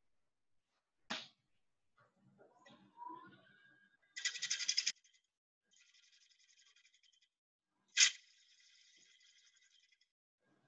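Woodturning tools being handled: a sharp click about a second in, a short rapid metal rattle near the middle, and another click near the end. A faint steady whine runs through the second half.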